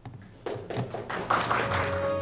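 Audience clapping that starts about half a second in and thickens into full applause, with closing music fading in near the end.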